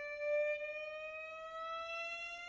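Amplified violin holding one long bowed note that slides slowly and steadily upward in pitch.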